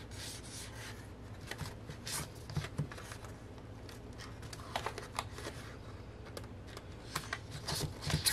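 Album photobooks and cards being packed back into a cardboard box: soft rubbing and sliding of paper and board against each other, with scattered light taps and knocks.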